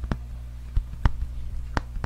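Fingers tapping on the cover of a hardcover book held close to a condenser microphone: four sharp, unevenly spaced taps over a steady low hum.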